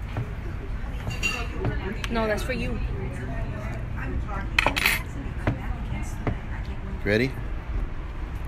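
Cutlery and plates clinking at a dining table, with a few sharp clinks about halfway through, over background chatter of voices.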